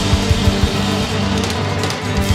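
Live Americana string band playing an instrumental passage with no singing: drum hits on a quick beat under steady bass notes, guitar and fiddle.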